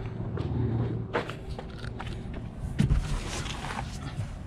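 Footsteps and a few short knocks and rustles of a person getting into a car.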